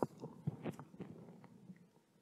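A person chewing a piece of communion bread: faint, irregular small clicks and mouth noises that thin out and fade away by the end.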